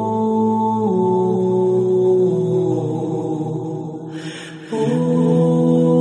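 Slow background music of long held tones that change chord every second or so. About four seconds in it thins out under a brief hiss, then the held chord comes back fuller.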